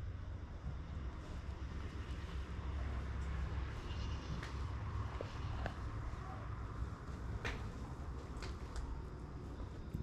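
Faint steady low rumble with a hiss over it, and a few soft scattered clicks.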